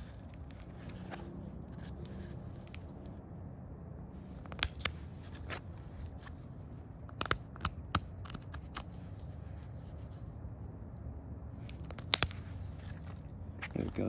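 Antler pressure flaker working the edge of a rhyolite point held in a leather pad: a series of sharp, short snaps as small flakes pop off the stone, irregularly spaced, most of them in the middle stretch and two more near the end.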